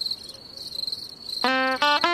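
Crickets chirping in a steady pulsing high trill. About one and a half seconds in, a guitar comes in with plucked notes over them.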